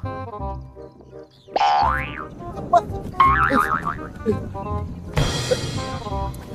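Comic background music overlaid with cartoon sound effects: a springy boing rising quickly in pitch, then a wobbling warble, then a loud burst of noise near the end.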